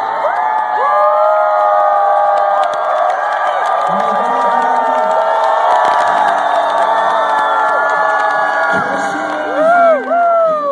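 Large concert crowd cheering and whooping, many voices overlapping, with the band's music underneath. A louder swell of calls rises and falls near the end.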